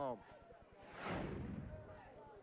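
A whoosh of noise about a second long that swells and then fades, the kind of effect laid under a TV sports graphic as it leaves the screen.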